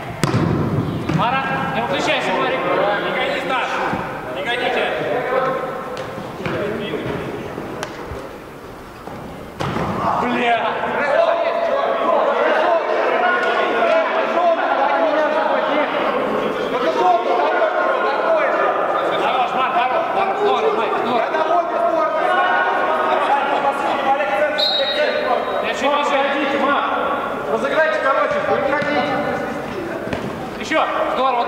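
Players' voices shouting and calling over one another in a large indoor sports hall, with thuds of a football being kicked on the turf.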